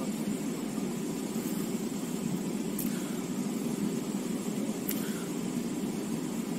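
A car engine idling: a steady low hum, with a couple of faint clicks partway through.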